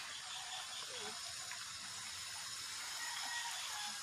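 Running water from a creek, a steady faint hiss.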